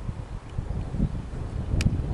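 Wind buffeting the microphone with a low rumble, and near the end a single sharp crack of a cricket bat striking the ball.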